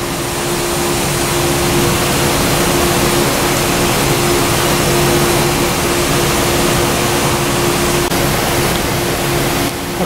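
Electric valve actuator's motor and gear train running as it drives a choke valve toward the closed, 4 mA position: a steady hum that stops shortly before the end.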